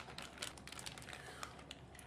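Faint crinkling and small clicks of a plastic piping bag being handled as it is filled with a soft avocado mixture.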